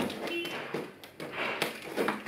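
Utility knife cutting through a cardboard box, giving a few short scraping strokes.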